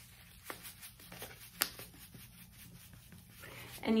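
Faint rustling and a few light clicks from a foil packet as gel powder is poured from it into a bowl of water.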